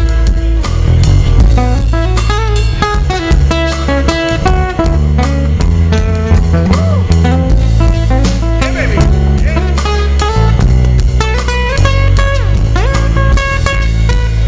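A live blues band plays an instrumental break between verses: acoustic guitar picking over a drum kit and low bass notes, with no singing.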